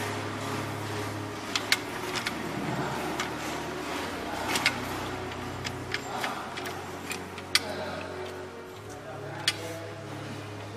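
Scattered sharp metal clicks and knocks, about seven spread through, as the lid of a stainless-steel distillation tank is closed, over a steady low hum.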